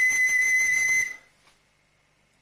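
A small recorder holding one high, steady note that stops about a second in.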